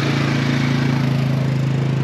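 Four-wheeler's engine running close by at a steady, unchanging pitch.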